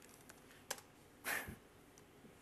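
A few faint clicks of laptop keys being pressed to wake the computer from its screensaver, with a short soft rush of noise about a second in.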